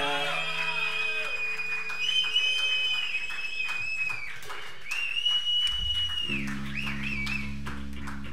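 Live band music on electric guitars: sustained high guitar notes that bend in pitch, joined by low sustained notes about six seconds in.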